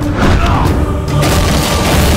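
Film fight sound effects: heavy booming impacts as a body is thrown and crashes to the ground, over a dramatic background score.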